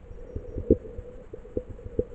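Muffled sound picked up by a camera held underwater: a run of irregular soft knocks and clicks, the loudest a little under a second in. Beneath them are a low rumble and a faint steady hum.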